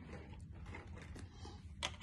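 Faint handling of miniature toy food pieces, with scattered light ticks and one sharper click near the end.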